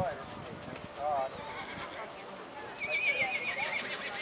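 A horse whinnying: a long, high, wavering call that falls slightly, heard near the end over background chatter.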